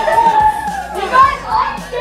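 Several young girls' voices talking and calling out over one another, with high pitch glides.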